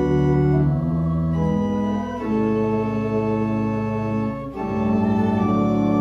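Church organ playing a slow hymn in sustained chords that change every second or so, with a brief dip between chords about four and a half seconds in.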